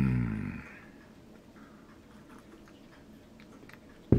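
A man's long hummed "mmm" of enjoyment at a bite of muffin, sliding down in pitch and fading out within the first second. After it there is quiet room tone with a few faint light clicks.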